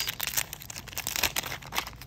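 A foil Magic: The Gathering booster pack wrapper being torn open and crinkled in the hands: a dense run of sharp crackles that thins out near the end.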